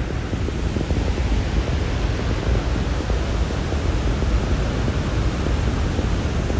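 Steady loud rushing noise with a deep low rumble, unbroken throughout, from the falling water of Niagara Falls.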